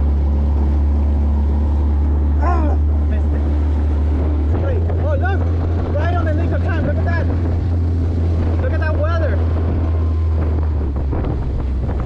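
Outboard motor driving a small plastic boat: a steady low engine hum under water and wind noise. The engine note shifts about four and a half seconds in.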